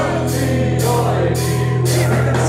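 Live psychedelic rock band playing, with singing over one held low note and three bursts of high hiss about half a second apart.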